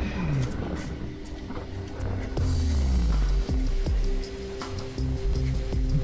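Background music with slow, held tones.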